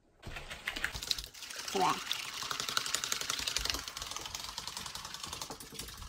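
Eggs being beaten with a coil whisk in a small bowl: a fast, even run of clicks and scrapes as the whisk strikes the bowl, to make them fluffy.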